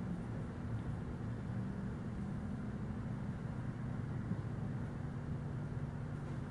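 Steady low hum with a faint even hiss: room tone, with no distinct sound from the stamp pressing into the soft clay.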